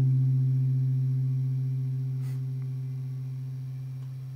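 Gibson semi-hollow electric guitar letting a single strummed chord ring out and slowly fade: the last chord of the song.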